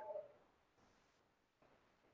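Near silence: faint room tone, with the end of a spoken word fading out at the very start.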